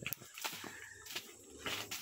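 A parang (machete) slashing through grass and undergrowth: a few faint, short cutting strokes, with leaves and stems rustling.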